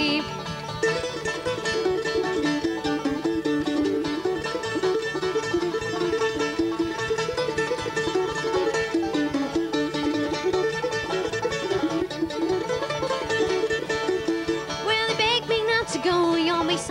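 Bluegrass band playing an instrumental break between sung verses, with mandolin, banjo, acoustic guitar and upright bass.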